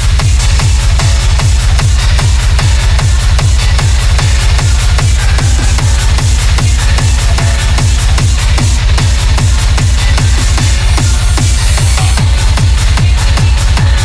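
Hard techno DJ mix: a fast, steady kick drum on every beat with busy hi-hats and synth layers over it.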